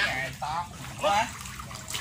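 Water sloshing and splashing as a man wades and works his hands in a muddy canal, with two short calls about half a second apart.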